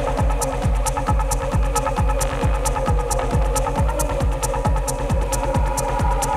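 Deep techno DJ mix: a steady four-on-the-floor kick drum at about two beats a second, with offbeat hi-hats and a sustained, droning synth pad.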